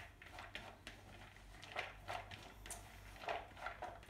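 Faint, irregular soft rustles and clicks of chopped chicken, cabbage and bean sprouts being tossed together by hand in a glass bowl.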